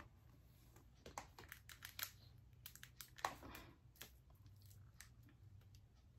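Near silence with scattered faint taps and rustles of a stack of books being shifted and handled in the arms, over a faint low hum.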